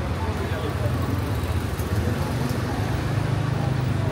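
Garbage truck's diesel engine idling close by, a steady low rumble, with street traffic and passers-by talking.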